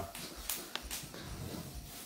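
Quiet room noise with a few short, faint clicks between about half a second and a second in.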